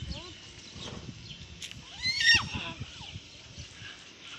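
An animal calls loudly about two seconds in, once, with a falling pitch.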